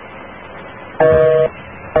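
North American telephone busy signal heard over the phone line. After about a second of line hiss, a half-second burst of the steady two-tone busy tone sounds, and the next burst starts near the end. The number being called is engaged.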